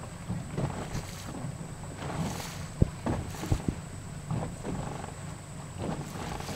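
Steady low engine rumble and water washing along a boat's hull on open sea, with three sharp knocks about three seconds in.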